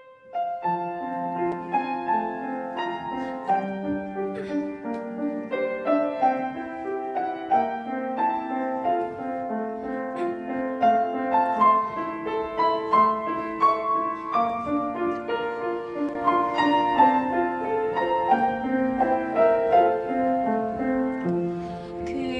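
Grand piano playing the introduction to a Korean art song solo: a continuous flow of notes, mostly in the middle register, starting about half a second in.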